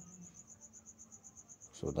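A cricket chirping in the background in a fast, even, high-pitched pulse. A word of speech begins right at the end.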